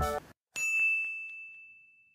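A single bright electronic ding, a logo-reveal chime, struck about half a second in and ringing out as it fades over about a second and a half.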